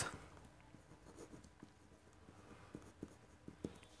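Faint sound of a pen writing on paper, light scratching strokes with a few soft ticks as words are written out by hand.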